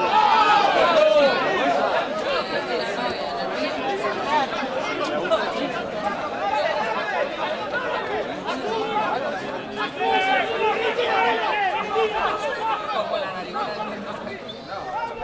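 Crowd chatter at a rugby match: many voices talking and calling out over one another, with no single voice standing out.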